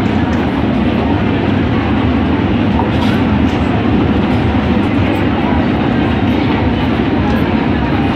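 Steady, loud din of a busy indoor shopping mall: a dense rumbling hum with crowd chatter mixed in.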